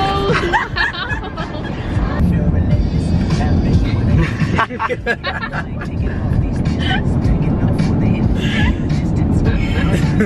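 Teenagers laughing and chattering inside a moving car, over steady road rumble and background music.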